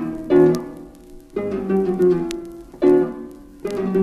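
Solo harp playing a run of loud chords, each struck and left to ring and die away, about one a second. The recording comes from an old vinyl LP, with faint surface clicks over the music.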